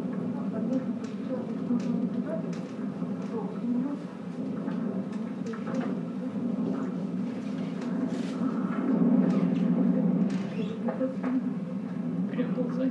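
Footage from a runner's camera played back over loudspeakers in a room: a woman's muffled, hard-to-make-out voice over a steady rushing noise, somewhat louder about eight seconds in.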